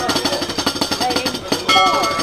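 A drumroll sound effect, a fast even run of drum hits, builds to the reveal of the rating. About one and a half seconds in it gives way to a ringing, bell-like chime.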